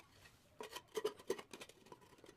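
A quick run of light clicks and taps about half a second to a second and a half in, as a ceramic floor tile is handled and set into place, then a few fainter taps.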